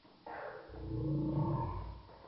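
A deep creature roar: it comes in abruptly a quarter second in, swells to its loudest past the middle, and dies away just before two seconds.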